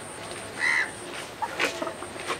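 A single harsh bird call, about half a second in and lasting about a third of a second.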